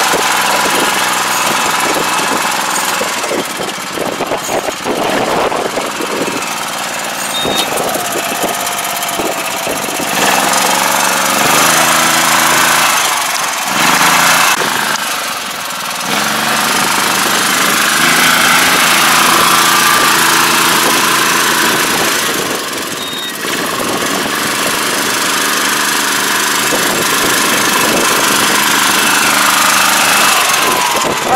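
A 2021 Iseki Sanae five-row rice transplanter running as it plants, its small engine and the working planting mechanism making a steady mechanical clatter, rising and falling in loudness as the machine moves past.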